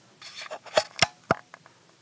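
Small hard clicks of a Parker Duofold fountain pen's blind end cap being unscrewed and handled: a brief scrape, then three sharp clicks within the first second and a half, with a few fainter ticks after.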